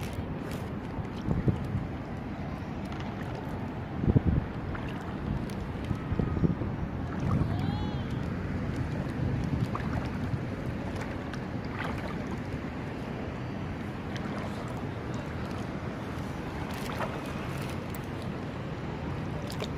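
Wind rumbling on the microphone over shallow seawater. Barefoot steps wading through it make a few short splashes and knocks, the loudest about four seconds in.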